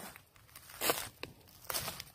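Footsteps crunching through dry fallen leaves on a forest floor: two short rustles, one about a second in and one near the end.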